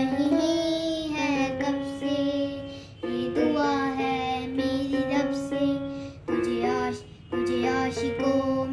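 A child singing a slow Hindi film song, accompanied by a small electronic keyboard playing steady held notes under the voice, with short pauses between phrases.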